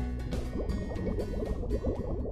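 Water bubbling steadily, in many quick small bubbles, under the last bars of the closing music.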